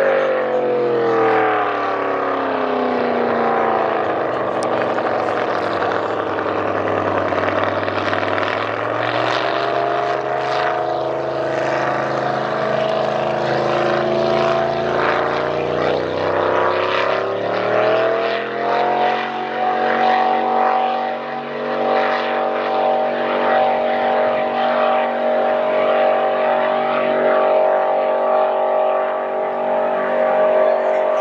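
750-horsepower race boat's engine running hard across open water, with the hiss of its hull spray. The engine note sinks over the first several seconds, stays low for a while, then climbs back about two-thirds of the way through and holds steady.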